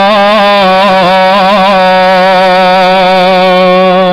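A male preacher's voice holding one long, melodic, chanted note in the style of a Malayalam Islamic sermon. Its pitch wavers in small turns for the first couple of seconds, then holds steady.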